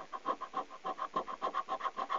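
Scratch-off coating of a lottery scratchcard being scratched away in quick back-and-forth strokes, about seven a second.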